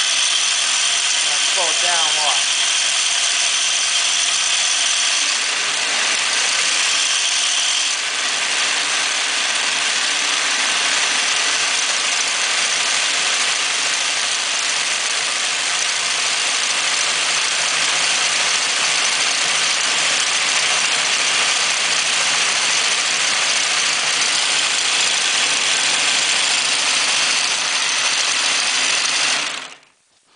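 Homemade multi-cam, rocker-arm machine running at high speed: a steady, dense mechanical clatter of cams and rocker arms that stops suddenly near the end.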